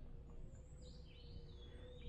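Faint woodland birdsong: a thin, high whistled call that wavers and then holds steady through the second half, over quiet forest background.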